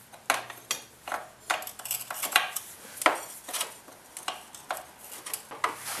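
Irregular metal-on-metal clicks and clinks, a few a second, as a loosened bolt on an ATV's rear axle carrier is turned by hand.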